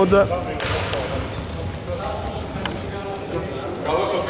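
Indoor basketball game on a wooden court in an echoing hall: voices, knocks of the ball and feet on the floor, and a brief high squeal about two seconds in, with a fainter one near the end.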